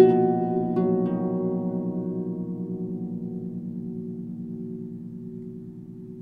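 Harp music: a few plucked notes at the start, the last about a second in, then the chord left to ring and slowly fade away.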